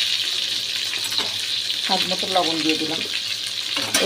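Pointed gourd (potol) pieces sizzling steadily as they fry in oil in a nonstick pan, stirred with a spatula, just after salt has been added.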